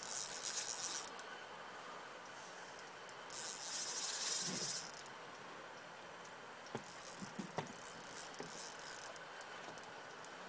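Fishing reel buzzing in two bursts while a hooked steelhead is played: one burst of about a second at the start, a longer one of about a second and a half just before halfway. A few light knocks follow later.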